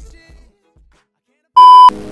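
Intro music fading out into a second of near silence, then a short, very loud, steady electronic beep lasting about a third of a second that cuts off sharply as background music starts.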